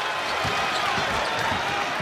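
Basketball dribbled on a hardwood court, with a bounce about every third of a second, over a steady murmur of the arena crowd.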